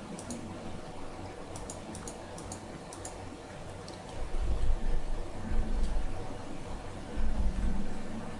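Computer mouse button clicking, mostly in quick press-and-release pairs, about ten clicks over the first three seconds. Then a deep, low rumble sounds twice in the second half: once for about two seconds and once briefly near the end.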